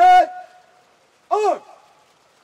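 Two shouted drill commands, each a single drawn-out call that rises and falls in pitch. The second comes about a second and a half after the first, and each trails off in a short echo.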